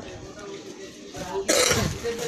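A single short, loud cough about one and a half seconds in, over faint background talk.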